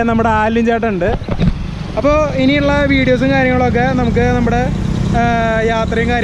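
Men's voices talking to the camera over a steady low rumble of road noise.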